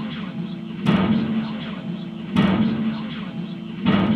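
Experimental noise music from an amplifier and effects pedals: a steady low drone with a loud noisy burst repeating about every second and a half, three times.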